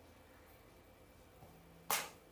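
Quiet room tone, then one short, sharp click near the end.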